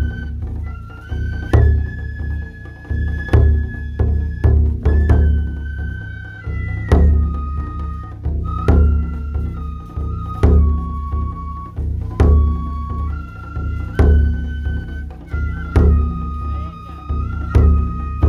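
Japanese taiko drum ensemble playing: deep drum strokes and sharp strikes under a high bamboo-flute melody of held notes that step up and down.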